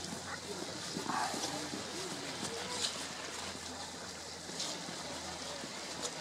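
A vast flock of bramblings passing overhead: a steady, dense rushing sound of many birds in flight, with short calls blended into it.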